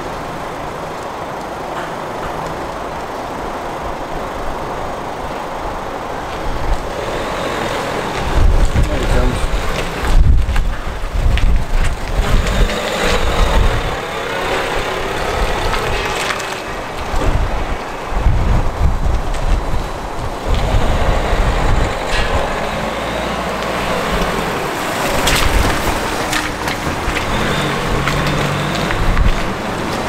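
A red Peugeot Partner van's engine as it drives out of the yard, with gusts of wind buffeting the microphone in repeated low rumbles from about eight seconds on.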